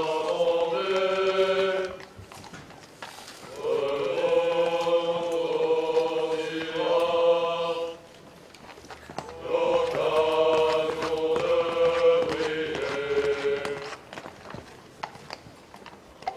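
A large choir of male cadets singing a slow military promotion song in long, held phrases of about four seconds, with short pauses for breath between them.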